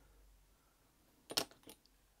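Small hard clicks from handling the glue bottle's applicator against the plastic model hull: one sharp click about a second and a half in, then two fainter ones, against a quiet background.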